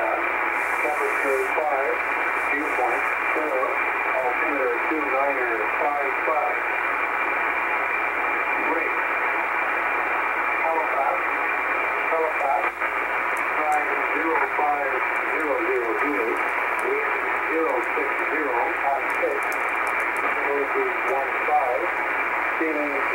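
Shortwave single-sideband voice reception on 6754 kHz USB: the Trenton military Volmet voice reading aviation weather, thin and narrow-band, over steady static hiss.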